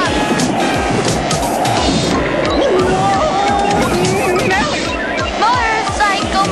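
Fast cartoon background music with a driving beat and sliding high notes.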